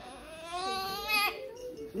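A toddler's drawn-out whiny cry, about a second long, high-pitched and wavering in pitch near its end.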